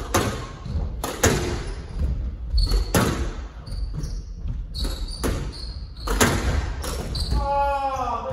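Squash rally: the ball strikes rackets and the walls about once a second, each hit ringing in the enclosed court, with short high squeaks of shoes on the wooden floor between the hits. Near the end comes a longer pitched squeal.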